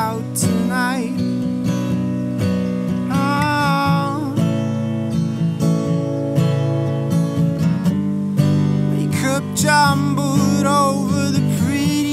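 Steel-string acoustic guitar strummed steadily in a live solo song. Short wordless vocal lines are sung over it about half a second in, around three to four seconds in, and again near the end.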